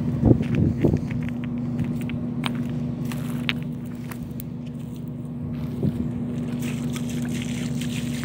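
A steady low rumble with a constant hum, with scattered light clicks and rustles of footsteps and hands in dry scrub, a cluster of them about a second in.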